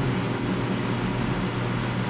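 Steady background noise: an even hiss with a faint low hum, no distinct event.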